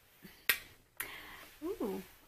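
Two sharp clicks about half a second apart, followed near the end by a brief vocal sound.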